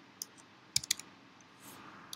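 Computer keyboard keystrokes: a single key click, then a quick run of three or four clicks, as a line of code is deleted in the editor.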